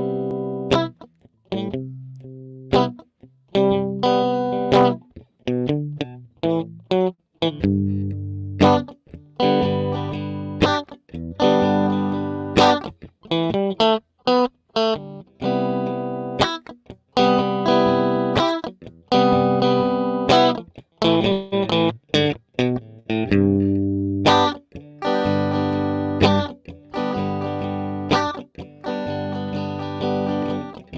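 Solo electric guitar, a Stratocaster-style guitar, playing an instrumental passage of chords: a steady run of struck chords, some cut short and others left to ring, with no singing.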